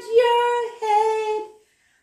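A woman singing a line of a nursery rhyme unaccompanied, in two held notes, then stopping near the end.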